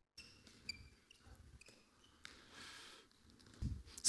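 Faint thuds of a handball bouncing and short squeaks of shoes on a sports hall floor, with a louder thump near the end.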